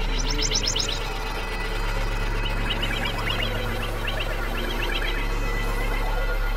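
Experimental synthesizer music: a steady low drone with clusters of quick, high, bird-like chirping tones, one burst near the start and more from about halfway through.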